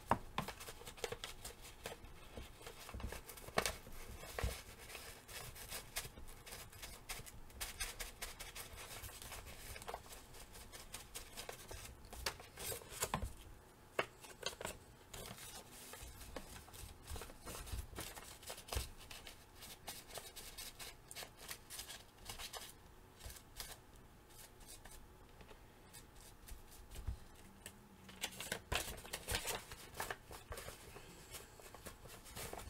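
Paper and fabric being handled and rubbed on a craft mat while its edges are inked: quiet, irregular rustling and scratchy strokes with light taps, easing off for a few seconds after the middle and picking up again near the end.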